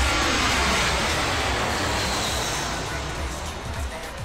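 Jet airliner noise, a steady rush that fades slowly away, laid over background music.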